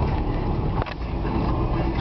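Steady low rumble of a car heard from inside the cabin, with one short click a little under a second in.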